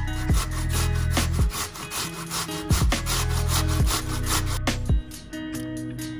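Peeled raw potato scraped down a stainless steel box grater in quick, even strokes, several a second, that thin out near the end. Background music with a steady low beat plays underneath.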